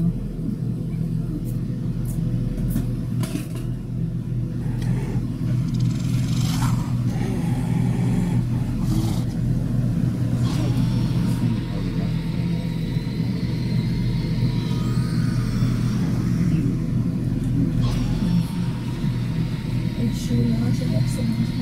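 A steady low hum runs evenly throughout, with a few faint clicks over it.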